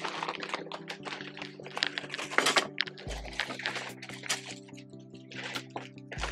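Clear plastic zip bag crinkling and crackling in irregular bursts as it is handled and squeezed, over background music with steady held notes.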